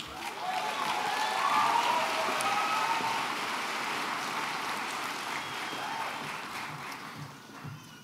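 Audience applauding in a large hall, with scattered cheering voices, swelling in the first second and fading away near the end, as a degree is conferred.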